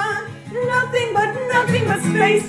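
A song playing: a voice sings a wavering melodic line over the accompaniment, after a brief dip in level about half a second in.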